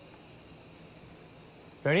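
Handheld culinary butane torch hissing steadily as its gas flows, ready to caramelise turbinado sugar for a brûlée crust.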